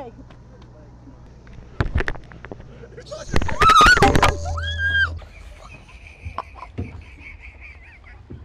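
A woman cries out and laughs in a loud burst about three seconds in, startled. Just after it comes a short horn-like tone.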